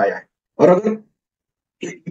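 Speech only: a man talking in Hindi in a few short bursts, with dead-silent gaps between them.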